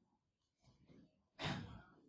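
Near silence in a lecture room, broken by a single short exhale, like a sigh, about a second and a half in.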